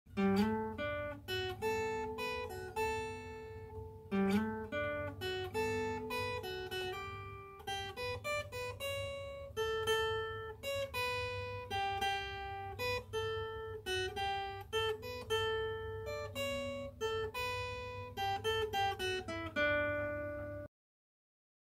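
Acoustic guitar picking a single-note melody, one plucked note after another with short runs, ending in a descending run of notes.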